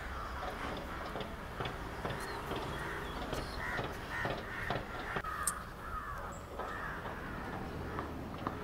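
Crows cawing, a string of short harsh calls, with a few sharp knocks between them.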